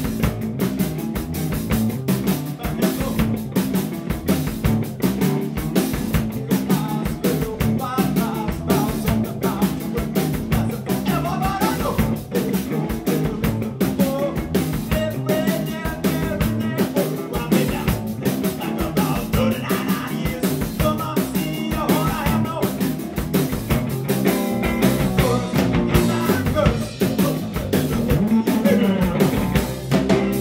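Rock band playing live: a drum kit keeping a steady, busy beat under electric bass and electric guitar.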